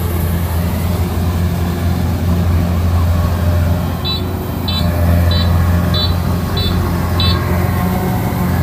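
Kubota DC-93 rice combine harvester running steadily under load, its diesel engine and threshing machinery working as it cuts and threshes rice. From about four seconds in, six short high beeps sound at an even pace, about two-thirds of a second apart.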